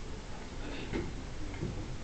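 A few faint clicks of MacBook Air laptop keys being pressed, over low room noise.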